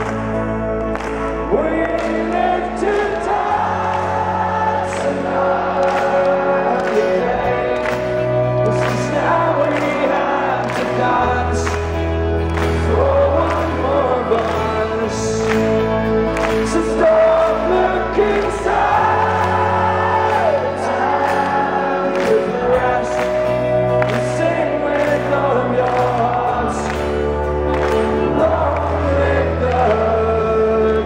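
Live folk-rock band playing a steady beat, with acoustic guitar, violins and drums, while a large arena crowd sings along in chorus over the bass line.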